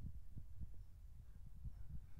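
Quiet low rumble with a few faint, soft low thumps.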